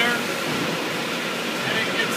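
Brewery bottling line running: the rotary bottle filler gives a steady, even machine noise with no distinct clinks or knocks.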